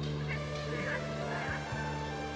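Background music with sustained low notes, and several short bird calls over it in the first second and a half.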